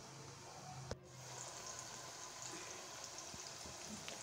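A single click about a second in, then nendran banana slices frying in coconut oil: a faint, steady sizzle with light crackles.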